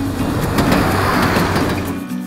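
Rushing, rumbling noise of a train in motion, swelling to a peak about a second in and fading away by the end.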